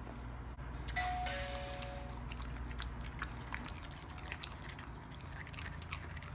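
A two-note descending chime, a higher tone then a lower one, sounds about a second in and fades after about a second. Around it are many short wet clicks from a dog licking its mouth.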